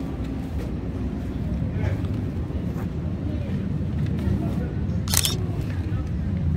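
A single camera shutter click about five seconds in, over a steady low street rumble.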